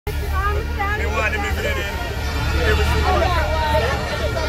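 Crowd chatter: several voices talking over one another, over a steady low rumble.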